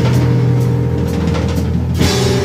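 Instrumental rock trio playing live: electric guitar and bass holding sustained notes over drums and cymbals, loud and continuous.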